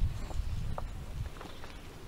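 Faint low rumble from a handheld microphone, with a soft knock at the start and a few scattered small clicks, typical of the microphone being shifted in the hand.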